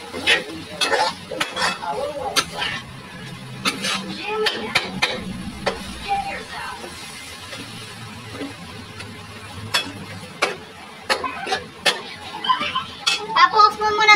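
Metal spatula scraping and clacking against an aluminium wok while food is stir-fried, the sharp knocks coming irregularly every second or so over a faint sizzle.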